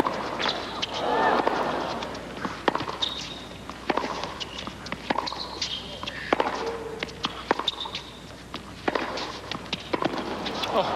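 Tennis rally: a ball struck back and forth by racquets about once a second, with short high squeaks of players' shoes on the hard court between the hits.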